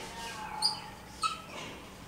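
Felt-tip marker squeaking on a whiteboard while words are written: a few short, high squeaks with faint scratching between them.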